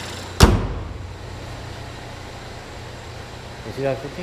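A car hood slammed shut about half a second in, one sharp bang, over the steady idle of the 2015 Chevrolet Equinox's 2.4-litre four-cylinder engine.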